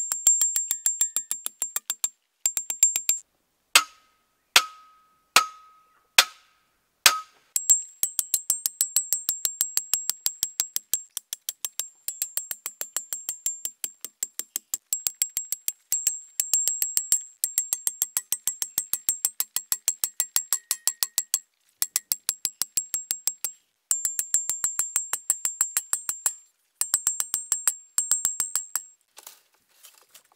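Steel T-post fence posts being driven into the ground with a six-pound axe head used as a sledgehammer: sharp metallic clangs with a ringing tone from the post. A few slower blows come about four to seven seconds in, then fast, even runs of strikes broken by brief abrupt breaks.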